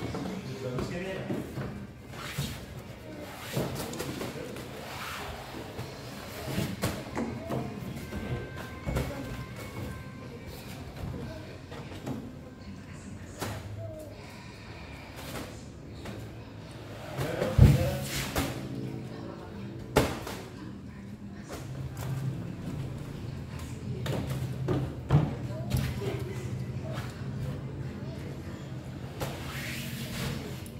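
Children playing on a plastic slide and swing set, with their voices and music running throughout. Scattered knocks, and a little past halfway a sharp thump, the loudest sound, as a child and a large toy come down the plastic slide; another knock follows a couple of seconds later.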